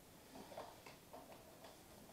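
Near silence with a few faint, irregular clicks and ticks, about half a dozen spread through the middle.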